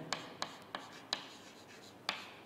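Chalk writing on a chalkboard: about four short, sharp taps and scratches of the chalk as a word is written, all within the first second or so.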